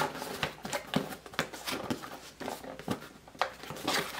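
A small cardboard mailing box being handled and opened by hand: a string of irregular taps, scrapes and rustles of cardboard and paper.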